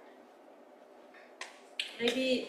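Faint room hiss, then two quick sharp taps about a second and a half in: something hard being set down on the blackboard's chalk tray.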